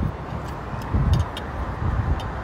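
Low rumbling noise from a handheld phone's microphone being moved around outdoors, with a few small scattered clicks. The rumble swells briefly about halfway through.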